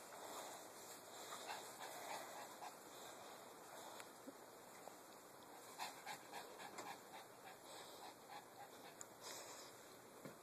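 Very quiet: a dog panting faintly, with a few soft ticks in the second half.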